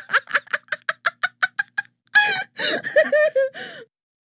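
A person laughing hard: a rapid, high-pitched run of "ha" pulses, about eight a second, that gradually fades. About two seconds in comes a gasping breath, then a few more laughs that cut off suddenly near the end.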